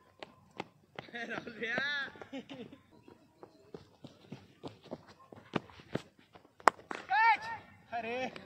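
Cricket players shouting calls on the field, with scattered light taps of footsteps. Near the end comes one sharp crack, the loudest sound, followed at once by another shout.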